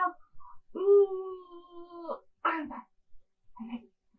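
A woman's voice holding one long, slightly wavering vowel sound for about a second and a half, then a short sharp vocal burst, with a few faint vocal sounds near the end.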